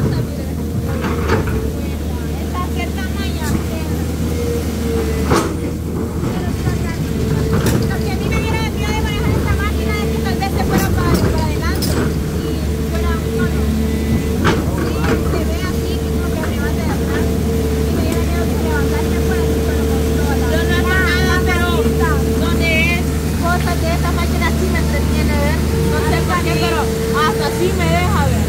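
John Deere crawler excavator's diesel engine running steadily as it works, with a few sharp knocks.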